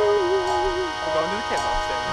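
A man laughing, his voice wavering in pitch in the first second, over steady held tones from a quiet backing track.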